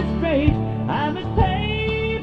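Southern gospel quartet music playing, with a melodic lead over a steady beat.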